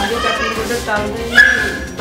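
A woman talking, with a short high steady whine about one and a half seconds in.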